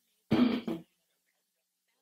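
A man clearing his throat close into a handheld microphone: one short two-part clearing near the start.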